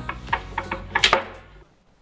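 Several light clicks and knocks, the loudest about a second in, as a plastic E-RAZ airsoft gas grenade is handled and set against the tabletop.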